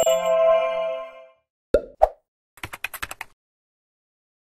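Animated logo intro sound effects: a bright chime rings and dies away over the first second, then two quick pops, then a rapid run of clicks like typing.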